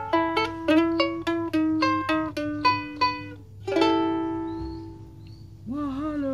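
Mahalo kahiko-type soprano ukulele finger-picked: a quick run of single plucked notes, then a last group of notes struck about four seconds in that rings out and fades away.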